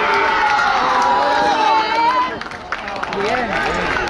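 Sideline spectators at a children's football match shouting during an attack, one voice holding a long yell for about two seconds before breaking off, with other voices and a few short knocks after it.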